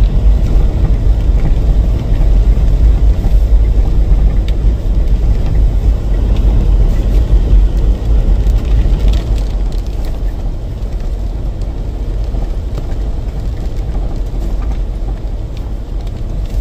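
Heavy, rough low rumble of a vehicle driving along a snowy dirt trail, heard from on board, easing off somewhat about ten seconds in.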